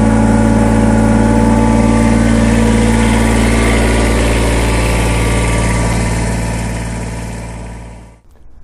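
Kubota BX2380 subcompact tractor's three-cylinder diesel engine idling steadily, fading out near the end.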